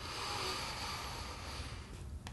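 A man drawing one long, deep breath in, a steady rush of air lasting nearly two seconds.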